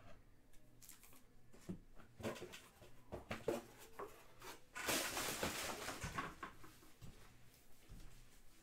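Trading cards and their packaging being handled: scattered faint clicks and rustles, with a louder rustle lasting about a second and a half around five seconds in.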